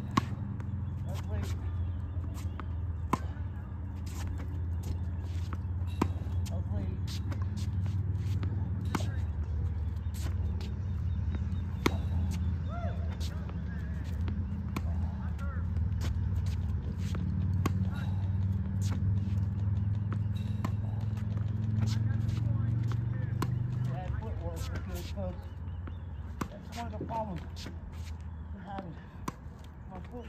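Tennis ball practice against a ball machine: sharp pops of balls being launched and struck with a racket, about every three seconds. Under them runs a steady low hum that stops about 24 seconds in.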